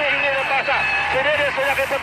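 A sports commentator's raised voice, rising and falling in pitch without pause, over constant arena crowd noise in a basketball TV broadcast.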